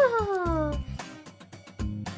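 A meow-like cry that falls in pitch over the first second, over background music with a steady beat.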